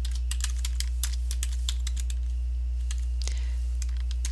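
Typing on a computer keyboard: a run of quick, irregular keystrokes as a short name is typed, with a brief lull a little past halfway. A steady low hum runs underneath.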